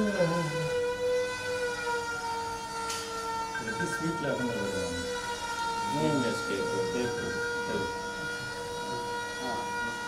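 A steady, high-pitched held tone with several overtones runs under low voices, sliding a little lower in pitch in the first couple of seconds and then holding level.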